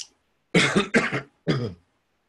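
A man coughing and clearing his throat in three short, loud coughs, the last a little apart from the first two.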